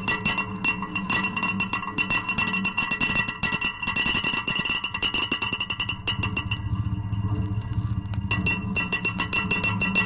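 Experimental electronic noise music: dense crackling clicks over sustained high tones and a low drone. Between about six and eight seconds in, the clicks thin out and the low drone swells.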